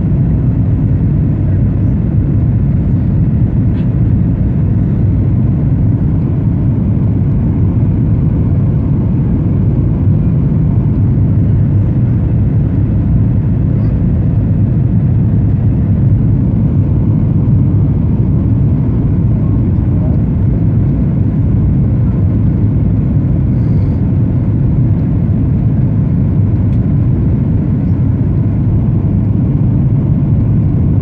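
Boeing 737-900ER cabin noise heard from a window seat over the wing during the descent: the steady, low-pitched sound of the engines and the airflow past the fuselage.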